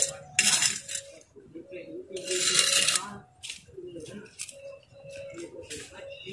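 Steel mason's trowel scraping and clinking against a metal pan of cement mortar. There are two longer scrapes, one about half a second in and one around two to three seconds in, with lighter taps and knocks between.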